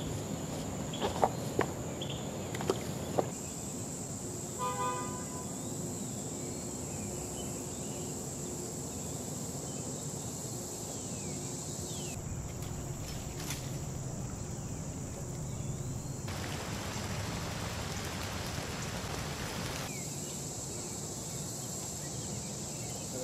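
Creekside outdoor ambience under a steady, high insect drone, with a few sharp knocks in the first three seconds and a short horn toot about five seconds in. A stretch of hiss rises from about sixteen to twenty seconds.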